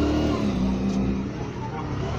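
A motor engine running steadily with a low rumble and a pitched hum that drops slightly about half a second in.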